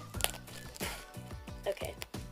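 Plastic packaging wrap crinkling as it is bitten and pulled at, with one sharp crackle about a quarter second in and a few smaller ticks after. Music plays in the background.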